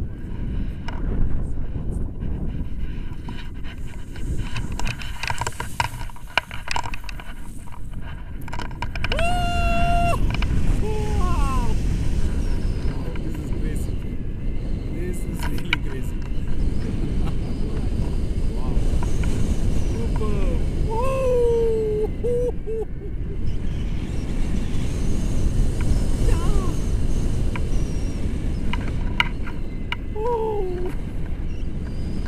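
Wind buffeting the microphone of a camera carried by a tandem paraglider during takeoff and flight, a steady rumbling rush that grows louder about nine seconds in. A voice lets out a long held call about nine seconds in and a few shorter sliding calls later on.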